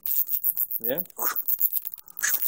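Bat held in a towel chittering: a rapid run of high, sharp clicks.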